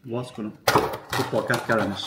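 A man's voice murmuring, with the crackle of plastic food wrapping being pulled open over the trays from about a second in.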